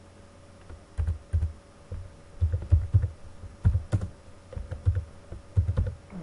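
Typing on a computer keyboard: irregular keystrokes in short runs with brief pauses, starting about a second in, each key press giving a dull thump.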